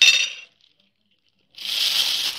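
A kitchen utensil clinks against a dish and rings briefly, then cuts off suddenly about half a second in. After a second of silence, a plastic bag starts crinkling near the end.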